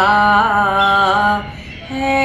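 A woman's voice singing a naat alone, in long held notes with a slight waver, breaking off briefly near the end before the next note begins.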